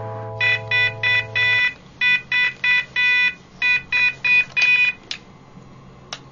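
Electronic alarm clock beeping in quick runs of three or four short high beeps, cut off with a sharp click a little after five seconds in. A held music chord fades out under the first beeps.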